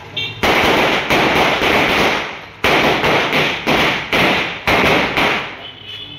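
Firecrackers going off in a loud, rapid series of sharp bangs starting about half a second in. There is a brief lull midway, then more bangs that die away near the end.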